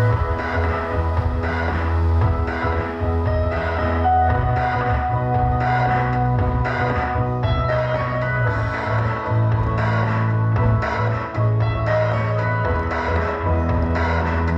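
Music playing through a PA setup with a Martin Roland MSW-910MK2 active subwoofer, heavy deep bass notes changing every second or two under the melody.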